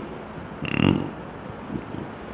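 One short, rough throat sound from a man, made turned away from the microphone, with a faint second one near the end.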